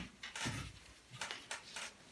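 A quiet pause in a small room, with faint rustling and a few soft, short clicks in the second half.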